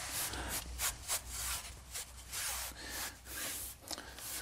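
Hands rubbing across the front grille of a soundbar in a few soft, irregular swipes.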